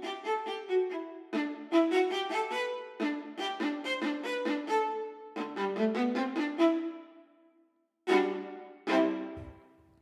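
Sampled solo viola played from a keyboard, in phrases of stepping legato notes. Near the end come two short separate notes about a second apart, each ringing out.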